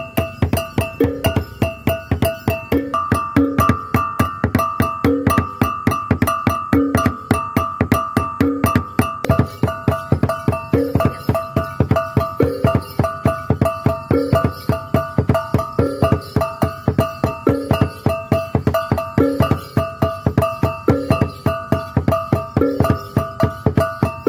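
Traditional percussion music: a fast, even beat of struck instruments over held, ringing pitched tones, with a short phrase repeating about every second and a half.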